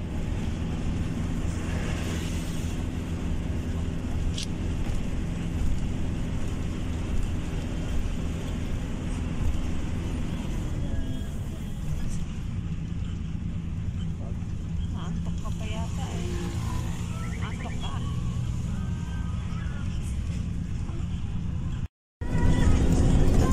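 Steady engine hum and road noise heard from inside a moving road vehicle, with no change in speed or gear.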